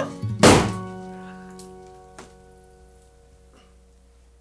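A confetti-filled balloon pops with one sharp bang about half a second in, over a held music chord that fades away over the next couple of seconds; a few faint ticks follow.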